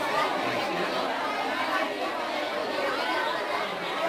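Several people talking at once in a room: indistinct voices and chatter, with no one voice standing out.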